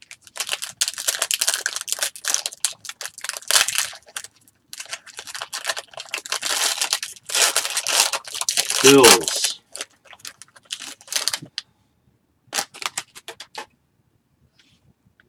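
Foil wrapper of a trading-card pack being torn open and crinkled in irregular bursts, with short pauses and a brief squeak of the foil near the middle.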